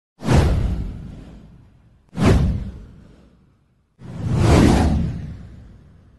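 Three whoosh sound effects for a title intro, each with a deep low end and a long fading tail. The first two hit suddenly about two seconds apart; the third swells up before fading away.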